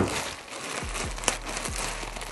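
Thin plastic packaging bag crinkling and rustling as it is handled, with sharp crackles every so often. A short thump right at the start is the loudest sound.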